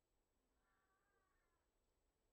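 Near silence, broken by one faint mewing animal call lasting about a second, starting about half a second in.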